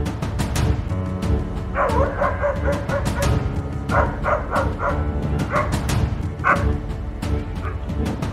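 Dog barking in a string of short barks starting about two seconds in, over background music with a steady beat.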